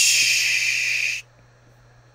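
A long, loud hiss, like a drawn-out "shh", that cuts off abruptly just over a second in.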